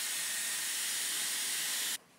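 Dyson Airwrap's curling barrel blowing air, a steady hiss that cuts off suddenly at the end.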